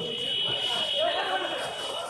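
Voices at a kabaddi match, with shouting from the players and crowd, over a steady high-pitched whine.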